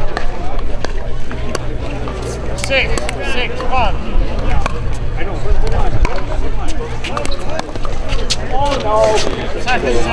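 Pickleball paddles striking plastic balls on the surrounding courts, sharp clicks at irregular intervals, over chatter from players and onlookers.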